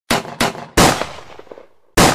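Four loud gunshots: three in quick succession in the first second, each ringing out, and a fourth just before the end.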